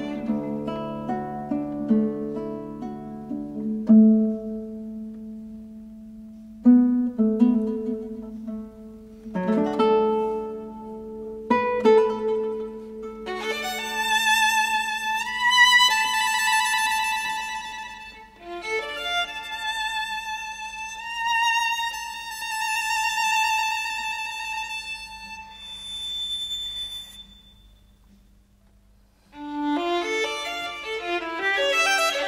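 Instrumental figure-skating programme music led by a bowed string instrument. Held lower notes come first, then a high, singing melody with vibrato from about midway. The music fades near the end and starts again just before the close.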